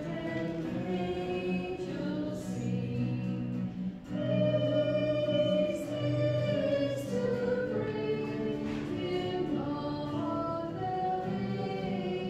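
A choir singing a slow hymn with held notes, growing a little louder about four seconds in. It is the offertory hymn sung while the altar and gifts are prepared.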